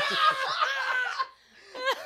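Several people laughing hard, one high-pitched laugh held for about a second before breaking off, with laughter starting up again near the end.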